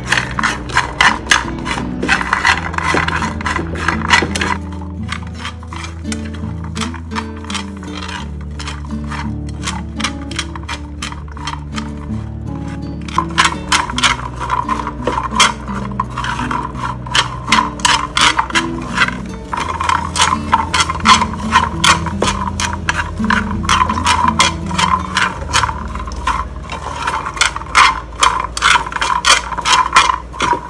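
Dried cacao beans clattering and scraping in a frying pan as they are stirred with chopsticks during dry-roasting: quick runs of clicks that thin out for several seconds in the middle, then pick up again. Background music plays throughout.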